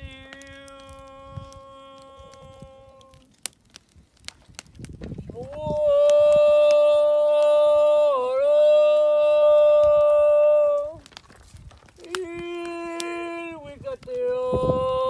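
A man's voice intoning long, held ceremonial calls. A first note fades out about three seconds in; a loud one is held for about five seconds with a brief dip in pitch midway; a lower, shorter call comes near the end.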